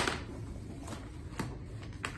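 Crayons and a cardboard crayon box handled on a table: one sharp tap right at the start, then two fainter taps about a second and a second and a half later.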